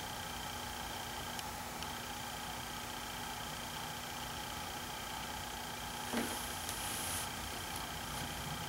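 Quiet room tone: a steady faint hum with a thin high whine running under it, and a soft brief rustle about six seconds in.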